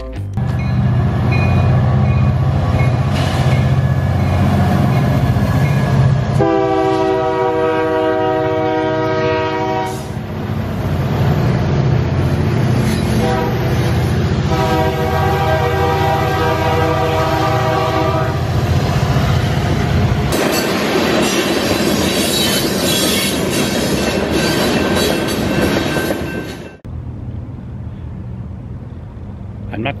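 Union Pacific freight train's diesel locomotives rumbling past and sounding a multi-tone air horn in two long blasts. About two-thirds of the way in, the rushing noise of the rail cars rolling by takes over, then cuts off suddenly to quieter street sound.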